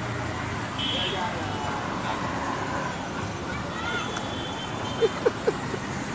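Street traffic noise with faint voices, and a few brief, loud bursts about five seconds in.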